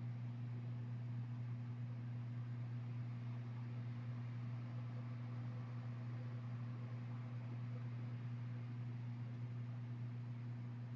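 Steady low hum with a faint hiss: the room tone of the narration microphone, with no other sound.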